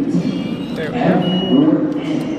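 People's voices talking, with a single short, high electronic beep a little over a second in from a MetroCard vending machine as it dispenses the card.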